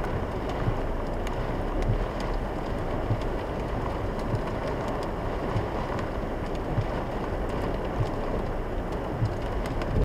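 Heavy rain pelting a car's roof and windscreen, heard from inside the cabin, with the car's engine running low underneath at a crawl. A soft knock repeats about every second and a bit, in time with the windscreen wipers' sweeps.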